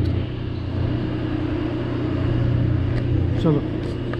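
Steady low hum of a running motor. A short spoken word comes near the end.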